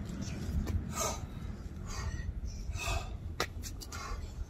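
Short, forceful breathy exhalations, about three of them, from people exerting themselves in overhead presses, with a few sharp clicks and a steady low rumble underneath.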